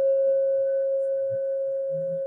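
Meditation singing bowl ringing out from a single strike: one steady tone with a fainter higher overtone, slowly fading. It is rung to close the meditation sitting.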